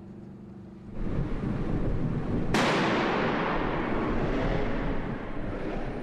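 A bomb squad's water-cannon disruptor firing at a suspicious device: a single sudden loud blast about two and a half seconds in, with a long echoing tail that slowly dies away. A steady rushing noise starts about a second before it.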